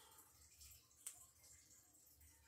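Near silence: room tone, with one faint click about halfway through from the plastic action figure being handled.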